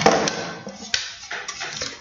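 A small plastic hand mirror and other items being handled and set down on a tabletop: rustling with a few light knocks and clicks, the sharpest about a second in.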